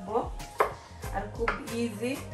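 Kitchen knife slicing an onion on a wooden chopping board: a few sharp knocks of the blade on the board, the loudest about halfway through.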